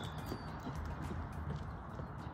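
Light, faint footsteps on block paving over low outdoor background noise.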